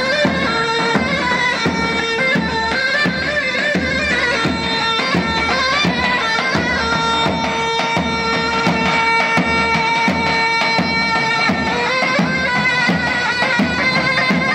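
Loud traditional folk dance music: a wind-instrument melody over a steady drum beat.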